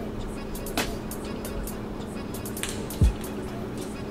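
Background music with a sparse, slow beat of low drum hits.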